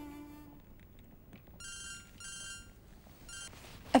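Mobile phone ringtone: electronic tones in three short bursts, two longer and a last shorter one, signalling an incoming call. The last held note of string music fades out first.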